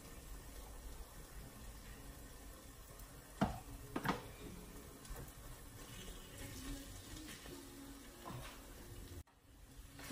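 Faint sizzling from a pan of bulgur wheat cooking on the stove, with two sharp knocks a little over three and four seconds in as a spoon works in the pan. The sound cuts out briefly near the end.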